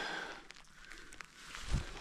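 Faint scuffs and small ticks of footsteps on rocky, gritty ground, with a soft low thump near the end.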